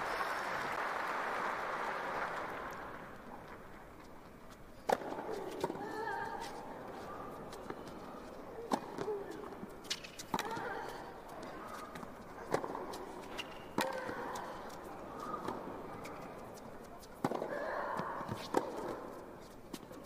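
Tennis rally: sharp racket strikes on the ball every second or two, with players' short grunts on several shots. Crowd noise dies away over the first few seconds before play starts.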